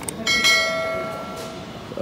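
A single bell-like metallic ring, struck once about a quarter of a second in and fading away over about a second and a half.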